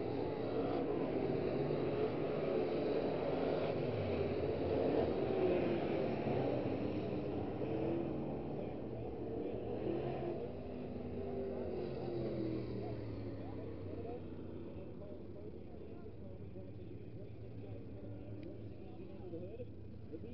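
Several B-Mod dirt-track race cars running at racing speed around the oval, their engine notes rising and falling as they pass. The sound fades over the second half.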